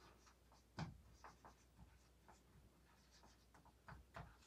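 Faint strokes of a marker writing on a whiteboard: a scatter of short scratches and light taps, the most noticeable coming a little under a second in.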